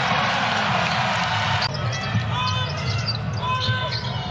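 Arena crowd noise with a basketball bouncing on a hardwood court. Less than halfway through, the crowd noise drops away suddenly, leaving the ball bouncing and several short, high sneaker squeaks on the floor.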